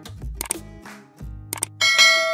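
Subscribe-button animation sound effects over background music: a mouse-click sound about a quarter of the way in, a quick double click near the end, then a bell ding that starts just before the end and rings on.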